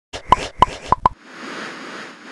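Four quick cartoon pop sound effects, then a whoosh, from an animated logo intro.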